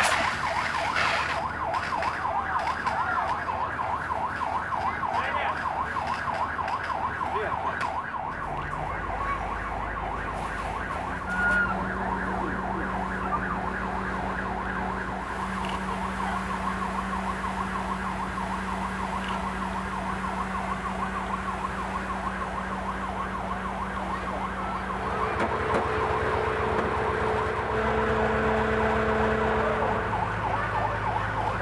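Fire engine siren sounding a fast, continuous warble. A steady low engine hum joins about a third of the way in and rises in pitch near the end.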